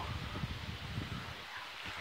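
Uneven low rumble of wind buffeting and handling noise on a hand-held phone's microphone, with faint rustling.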